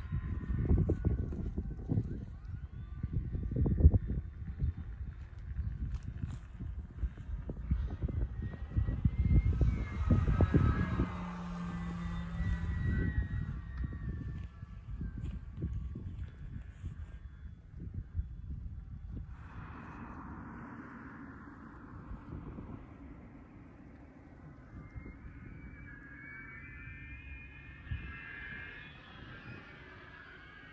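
Gusting wind buffeting the microphone in uneven rumbling bursts, strongest in the first half and dying away after about two thirds of the way in. A fainter hiss that rises and falls comes and goes above it, loudest near the end.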